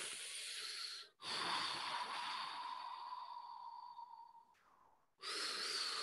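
Airy, hissing breath sounds close to the microphone: a short burst, then a longer one of about three seconds that fades, then another starting near the end.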